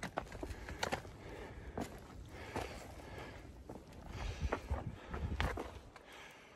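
A hiker's footsteps on a dry, leaf-littered dirt trail, about one step a second, with some low thuds near the end.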